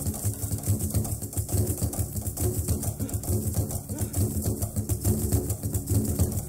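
Rapid, driving drumming on low-pitched hand drums in a steady, dense pattern, with tape hiss underneath.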